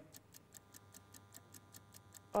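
Faint, fast ticking of a countdown-clock sound effect, about five ticks a second.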